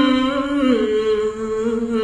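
A man's voice chanting Khmer smot (sung Buddhist poetry), holding one long drawn-out note that steps down to a lower pitch a little under a second in.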